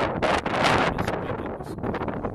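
Strong wind buffeting the microphone in uneven gusts.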